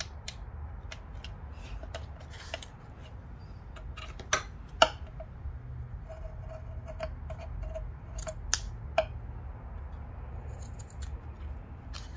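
Scissors snipping off the loose end of cotton lace trim glued to a cardboard envelope: two pairs of sharp snips, the first about four seconds in and the second about eight and a half seconds in, amid light rustling and handling of the card and lace.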